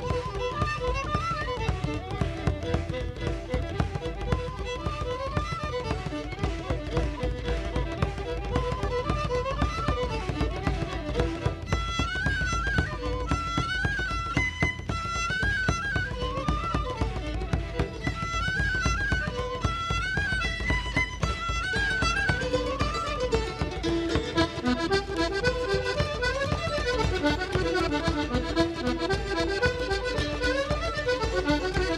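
A Newfoundland reel played live at a brisk dance tempo on fiddle and tin whistle over strummed plucked-string accompaniment. A higher melody line stands out from about twelve seconds in.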